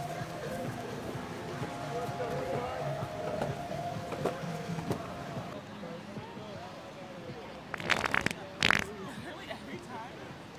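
Two short, loud, raspy fart noises close together near the end, played as a prank beside sunbathers, over a background of people's voices and chatter.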